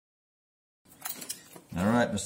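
Silence, then about a second in, the crackle of a clear plastic vacuum bag being handled as a whole snapper is pulled out of it. A person's drawn-out vocal sound follows, rising and falling in pitch, near the end.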